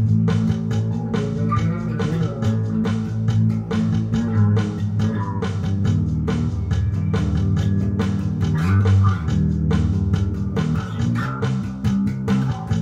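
Instrumental passage of a rock song: an electric bass guitar playing a heavy, steady low line, with drums keeping a regular beat and guitar and organ above.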